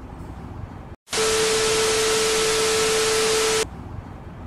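An edited-in static sound effect: a loud hiss with a steady hum running through it, starting sharply about a second in and cutting off sharply about two and a half seconds later, with quiet background before and after.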